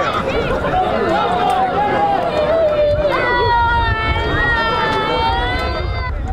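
Voices calling out across an outdoor football field, with no clear words; about halfway through, one high voice holds a long drawn-out call. A steady low rumble runs underneath.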